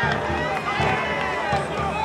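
Football stadium crowd: many voices shouting and chanting at once, overlapping into a dense, continuous din.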